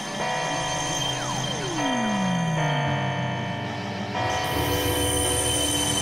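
Experimental synthesizer drone music: layered steady tones that shift in blocks every second or so, with a long descending pitch glide sweeping down about a second in.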